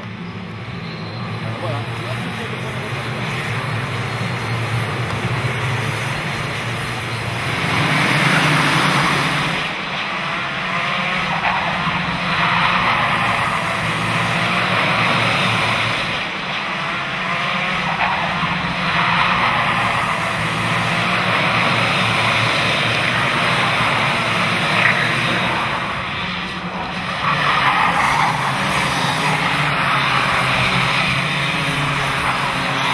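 A pack of two-stroke racing karts accelerating away from the start and running past in a group. Their engines make a continuous buzz that grows over the first few seconds, swells about eight seconds in and again near the end as karts pass close by.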